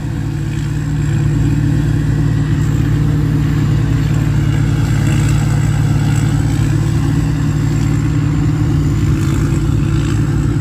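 Rice combine harvester's engine running in a steady drone at working speed while it cuts rice.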